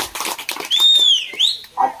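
Hand clapping from a small crowd dies away in the first half second. Then a high, clear whistle-like tone curves downward and sweeps back up, lasting about a second.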